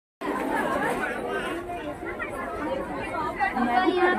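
Busy market crowd chatter: many voices talking over one another without pause, after a brief dropout at the very start.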